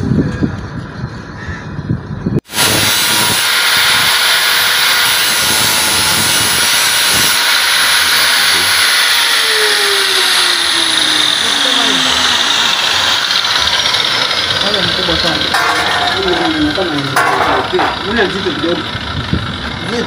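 Electric angle grinder running against steel. It starts abruptly a couple of seconds in as a loud, steady, hissing grind that goes on to the end, with its pitch dropping for a moment about halfway through.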